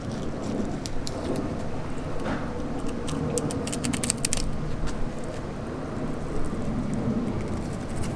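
A flexible fillet knife slicing along a fish's spine, its blade ticking and scraping against the backbone in scattered small clicks, most of them about three to four and a half seconds in. Under it runs a steady low rumble.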